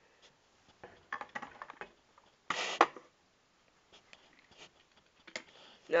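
Light clicks and knocks of a toy semi truck and trailer being handled and set down on a table, with one brief louder scraping noise about two and a half seconds in.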